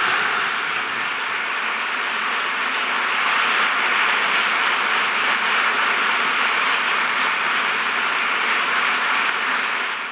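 A large audience applauding: dense, steady clapping that holds at an even level throughout.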